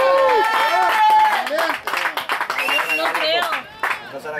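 Spectators shouting and cheering, with one long held shout early on and scattered claps, urging on a player running in for a try.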